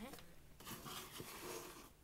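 Faint rustling of a dish cloth and cardboard as a homemade doll mattress is shifted by hand.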